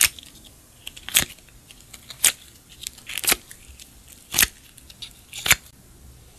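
Hand-handled slime giving six sharp snapping pops about a second apart as it is pulled and pressed.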